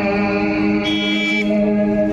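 Band music played loud over a truck-mounted loudspeaker rig: one long held note at a steady pitch, with a brief higher tone joining it about a second in.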